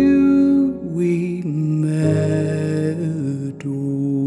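Slow piano music with long held notes that change every second or so.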